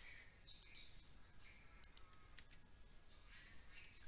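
Near silence with a few faint, scattered clicks of a computer mouse and keyboard.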